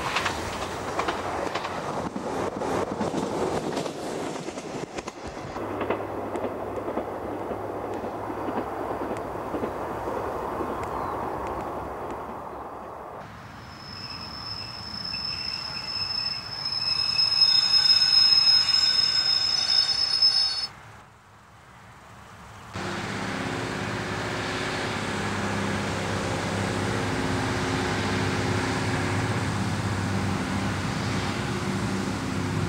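Diesel multiple-unit trains passing: first a rumble with rapid wheel clicks over the rail joints. After that a high wheel squeal builds and is loudest a little past halfway, then breaks off. After a brief dip, a steady low diesel engine drone follows.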